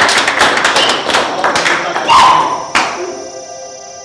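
A burst of quick, irregular claps and knocks over music ends with one sharp hit just under three seconds in. A held electronic synth chord follows.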